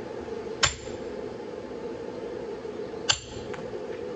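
Two hammer blows on a hand-held H13 hot cut tool driven into a red-hot steel railroad spike on an anvil, about two and a half seconds apart, each a sharp metal strike with a brief high ring. A steady hum runs underneath.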